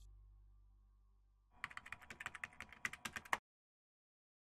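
Computer keyboard typing sound effect: a quick run of keystrokes starting about a second and a half in and lasting under two seconds, then stopping abruptly.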